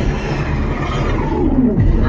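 Fighter-jet roar from an action film's soundtrack, dense and rumbling, with a sweep falling in pitch in the second half as the jet passes.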